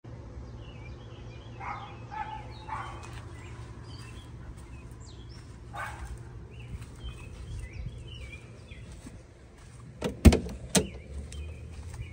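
A dog barking a few times in the distance over a steady low rumble, then a car door being unlatched and swung open near the end, a couple of sharp clicks and knocks.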